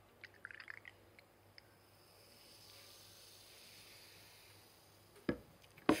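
Carbonated energy drink poured from a glass bottle into a glass shot glass: a faint trickle with a few quick glugs at first, then a soft fizzing hiss as the drink foams up in the glass. A single sharp knock about five seconds in.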